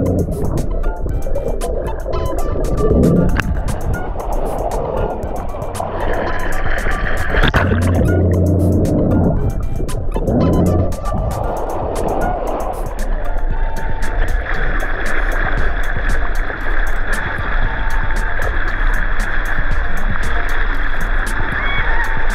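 Muffled rushing and gurgling water around an underwater sea scooter as it runs below the lake surface, then surfaces with splashing, under steady background music.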